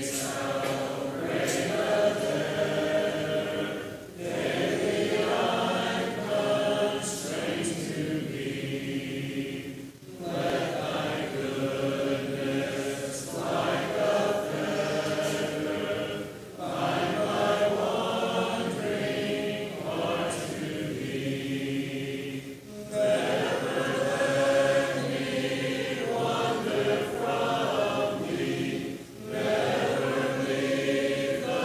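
Congregation singing a hymn a cappella in parts, the phrases held and pausing briefly about every six seconds for breath.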